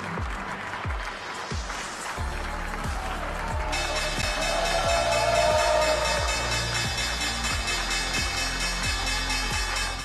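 Applause over upbeat music with a steady beat of about two thumps a second; about four seconds in, the New York Stock Exchange's opening bell starts ringing continuously.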